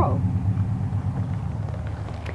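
A steady low mechanical rumble, like an engine running, continues after the last syllable of a spoken word.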